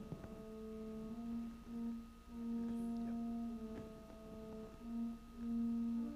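Church organ playing a slow melody of long, held notes over sustained chords, each note swelling and fading.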